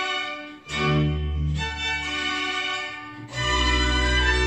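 A folk string band plays, with violins over a bass line, in held phrases. The sound dips briefly just over half a second in, and a new, fuller phrase starts about three seconds in.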